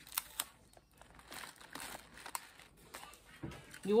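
Faint crinkling and a few light ticks as a paper candy packet is handled and taped onto a plastic basket.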